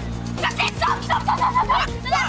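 Background music with a steady low backing throughout. About half a second in, a rapid run of short, high-pitched yelps starts over it.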